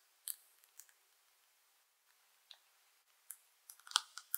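Faint crinkles and clicks of a plastic piping bag being squeezed as cream filling is piped onto sponge-cake rounds: a few scattered short clicks, with a small cluster near the end.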